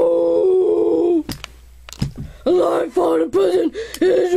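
A child's voice singing: one long held note, then after a short pause with two knocks, a sing-song run of short repeated syllables.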